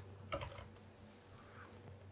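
A few quick, faint computer-keyboard keystrokes in the first half second, then quiet with a faint low hum underneath.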